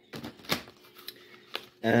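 Tarot cards being shuffled by hand: a few sharp card clicks, the loudest about half a second in.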